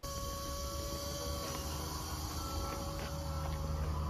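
Mercedes EQA electric SUV moving off slowly on its punctured ContiSeal tyre: a steady electric hum over a low rumble of tyres and wind that grows a little toward the end.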